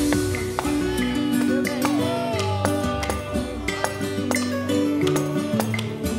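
Upbeat Latin music played live by a small band: a plucked small guitar over a drum and hand percussion keeping a steady beat.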